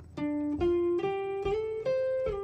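Electric guitar playing a classic blues lick on the pentatonic scale: single picked notes that climb in pitch one after another, joined by slides.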